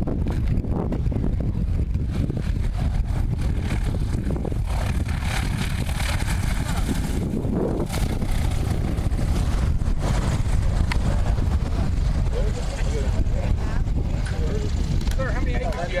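Light single-engine propeller aircraft running on a grass strip, its engine and propeller a steady drone, with heavy low rumble from wind on the microphone.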